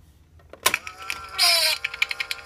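1974 Janex Bugs Bunny talking alarm clock going off: a sharp click about two-thirds of a second in as the alarm trips, then the clock's built-in recording starts playing, a tinny pitched voice sound with a falling glide.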